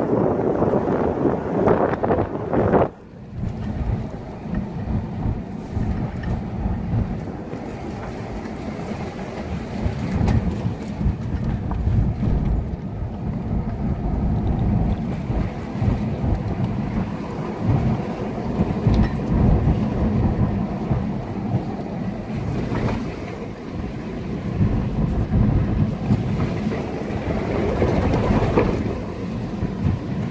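Cabin noise of a Nissan Pathfinder driving slowly on a gravel road: a low, uneven rumble of tyres on gravel and bumps, with the engine underneath. For the first few seconds wind buffets the microphone, and this cuts off abruptly about three seconds in.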